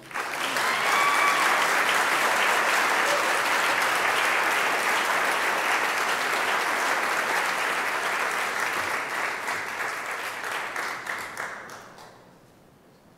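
Audience applauding a named inductee, a steady dense clapping that swells in right away, holds, then thins and dies away just before the end.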